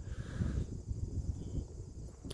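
Wind buffeting the microphone, heard as an uneven low rumble.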